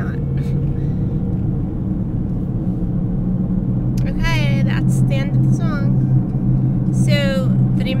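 Steady low hum of a car's engine and road noise heard inside the cabin while driving.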